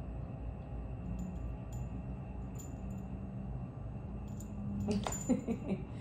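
A few faint, light metallic tinkles, scattered singly, from a small dog's collar tags jingling as it moves, over a steady low room hum; a soft laugh starts near the end.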